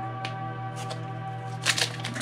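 A foil trading-card booster pack crinkling as it is picked up and opened, with a loud crackle near the end, over steady background music.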